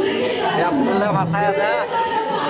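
Chatter of a group of men, several voices talking at once.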